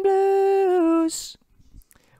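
A man singing one long held note unaccompanied. The pitch steps down slightly before the note stops about a second in, ending on a short 's' sound.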